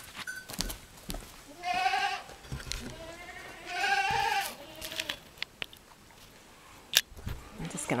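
Goats bleating twice, each a wavering cry of about half a second, a couple of seconds apart. A sharp click sounds near the end.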